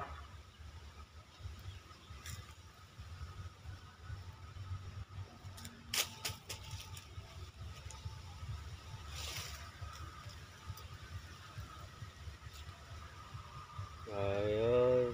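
Wire-mesh trap being handled, giving a few scattered sharp clicks and rattles of the metal mesh, the strongest about six seconds in, over a low steady rumble.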